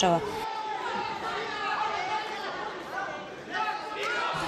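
Spectators chattering in a large indoor sports hall, many voices blending into one murmur with a slight swell near the end.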